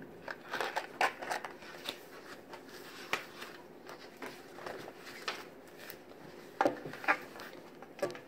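Paper rustling and light taps as the pages of a picture book are turned and handled: a scatter of soft short clicks and rustles, busiest in the first couple of seconds and again near the end.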